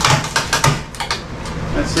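Wooden post knocking and scraping against the framing as it is handled free: a quick cluster of short sharp knocks in the first second or so.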